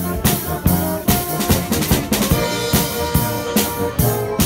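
Brass band with drums playing a TV-theme medley: held brass notes over a steady beat of drum strokes.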